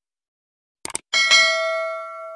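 Subscribe-button sound effect: a quick double mouse click just before a second in, then a bright bell ding that rings on and slowly fades.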